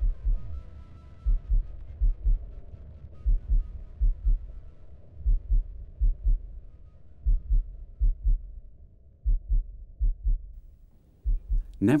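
Deep, heartbeat-like thumps repeating in groups of two or three, with a faint sustained tone under them in the first few seconds: a low, pulsing documentary music bed. The thumps thin out near the end.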